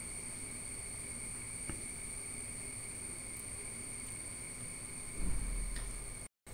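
Steady background hiss with a faint constant high-pitched whine, a single faint click a little under two seconds in, and a low rumble near the end.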